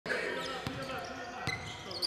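A basketball dribbled on an indoor gym floor: two bounces, about 0.8 s apart.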